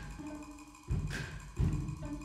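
Live percussion and chamber ensemble music: accented percussion strikes with deep thuds, about a second in and again just over half a second later, over held tones from the ensemble.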